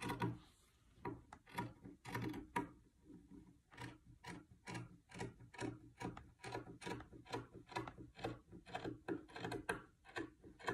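Scissors snipping through fabric: a run of crisp blade clicks, unsteady at first, then settling into a steady rhythm of about three snips a second.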